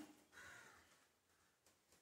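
Near silence, with one faint short sound about half a second in.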